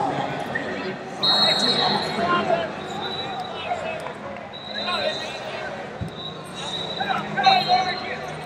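Busy wrestling-hall ambience in a large echoing room: several people shouting across the hall, with a few high, steady whistle-like tones and an occasional thud.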